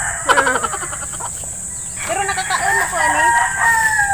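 A rooster crowing: a short call about a quarter second in, then one long crow from about two seconds in that holds steady and trails off near the end.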